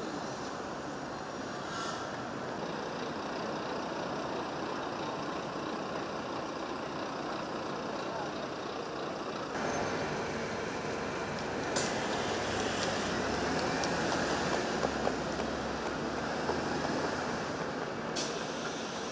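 Busy city street ambience: steady traffic noise under the murmur of passing people's voices. It grows louder and fuller about halfway through, with a sharp click a couple of seconds later.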